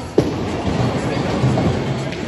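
A bowling ball lands on the lane with a sharp thud just after release, then rolls away down the lane with a steady low rumble.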